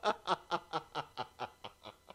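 A man laughing, a run of short chuckles about four or five a second that fade away steadily as the laugh dies down.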